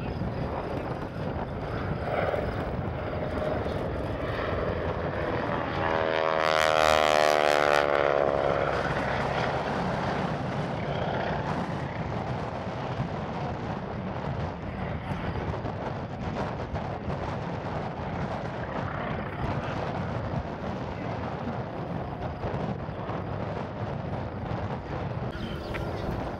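Propeller-driven aerobatic biplane flying overhead, its piston engine droning steadily. About six seconds in it passes close, swelling to its loudest with a downward sweep in pitch as it goes by, then settles back to a steady drone.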